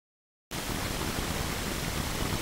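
Dead silence, then a steady, even hiss cuts in abruptly about half a second in and runs on unchanged, with no speech or other distinct sound in it.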